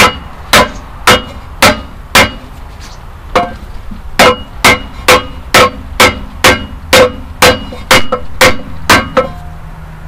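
Small sledgehammer striking an ash board laid on top of a steel cylinder liner, driving the liner into a Perkins 4-236 diesel engine block. A steady run of sharp blows, about two a second, each with a short metallic ring, with a pause of about a second after the first five.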